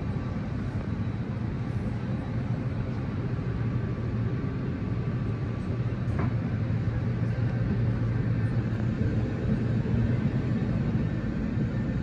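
Steady low hum of an Airbus A320neo cabin on the ground, the air-conditioning and ventilation running in the boarding cabin.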